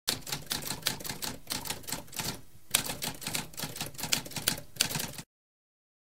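Typewriter typing: a fast run of key strikes with a short pause about halfway through, stopping abruptly a little after five seconds.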